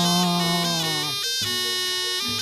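Live Javanese barongan accompaniment, led by a slompret (Javanese double-reed shawm) playing a high, nasal melody in held notes. Under it, a lower sustained note swells and stops about a second in.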